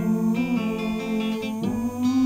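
Acoustic guitar playing an instrumental passage of a folk song, held notes changing every half second or so, with a brief sliding note near the end.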